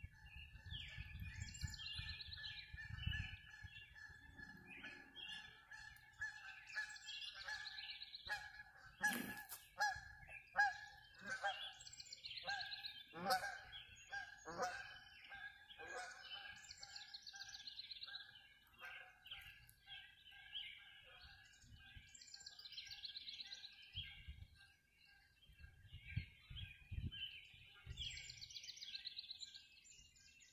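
Many birds calling and singing together, a dawn chorus, over a steady high tone. A run of loud calls that fall in pitch comes through the middle.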